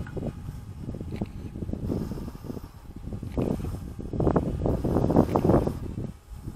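Wind buffeting an outdoor microphone in uneven gusts, a low rumble that swells loudest in the second half.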